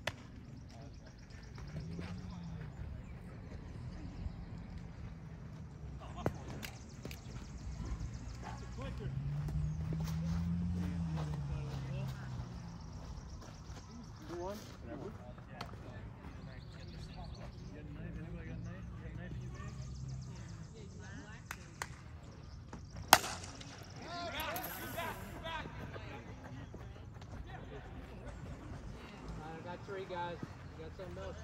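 A single sharp crack of a softball bat hitting a pitched ball, the loudest sound, about two-thirds of the way through, followed at once by players shouting. Before it, faint voices and a low hum that rises and falls.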